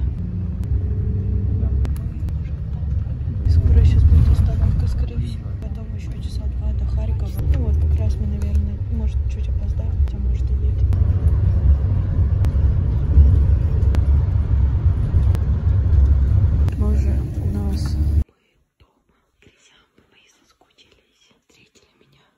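Steady low rumble of a moving coach bus heard from inside the cabin, with faint voices over it, cutting off suddenly near the end.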